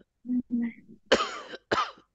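A person coughing twice in quick succession, about a second in, each cough short and harsh.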